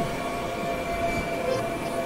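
Experimental electronic drone and noise music: several steady high tones held over a thick, unbroken wash of noise.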